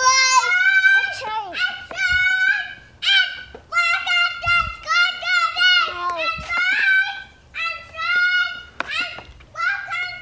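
A young child's high-pitched voice vocalizing in a sing-song string of short, wordless syllables that bend up and down in pitch.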